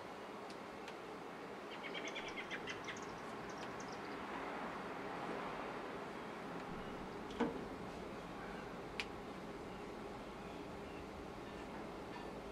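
A razor blade scraping latex paint off aquarium glass, faint and rough, with a sharp click about seven seconds in and a smaller one shortly after. A bird chirps a quick run of notes about two seconds in.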